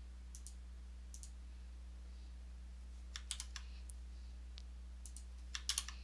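Scattered clicks of a computer mouse and keyboard keys, some single and some in quick clusters, over a faint steady low electrical hum.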